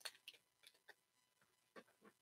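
About five faint, scattered clicks from trading cards and a clear plastic card holder being handled.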